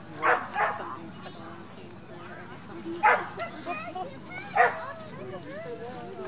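Four short, loud animal calls over background chatter: two in quick succession at the start, one about three seconds in, and one more a second and a half later.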